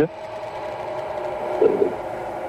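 A steady drone of several held tones through a pause in the talk, with a brief short sound about one and a half seconds in.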